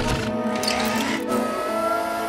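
Cartoon robot sound effects: mechanical whirring and clicking as a giant robot moves, over background music.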